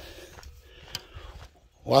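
Soft footsteps on a dry dirt track, with two faint crunches about half a second apart near the middle, over a low rumble.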